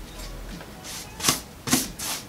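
A nearly dry, wide paintbrush swept across a wooden board in dry-brush painting: three quick scratchy bristle strokes in the second half, about half a second apart.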